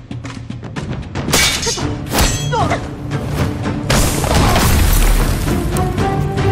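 Dramatic film score under fight sound effects: a quick run of sharp hits and swishes, then from about four seconds in a loud rushing blast with a deep boom.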